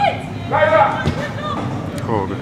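Footballers' voices shouting calls across the pitch during open play, with a single thud about a second in, a football being kicked.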